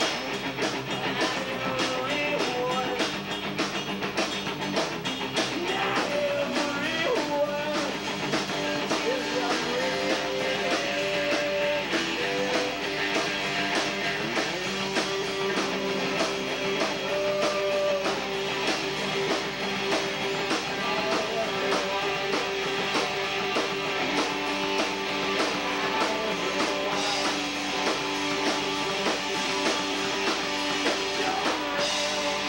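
Punk rock band playing live, with electric guitars, bass and drums going without a break and a lead vocal sung into the microphone.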